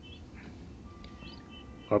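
Birds chirping faintly in short high chirps, with a thin steady whistled tone lasting about a second in the second half, over a low room hum.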